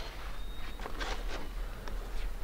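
Faint soft scuffs of feet on sand, a few of them around the middle, over quiet lakeshore ambience with a low steady rumble.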